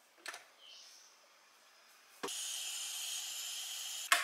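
Light handling of a stainless-steel electric kettle, then a click about two seconds in and a steady hiss as the kettle heats the water.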